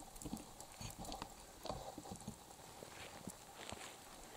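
Faint, irregular soft footsteps crunching in packed snow, several a second.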